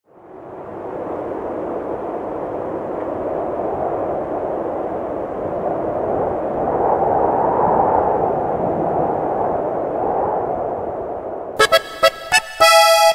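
A steady mid-pitched rushing noise fades in from silence, swells a little in the middle, then eases off. Just before the end a norteño band cuts in with sharp drum hits and accordion.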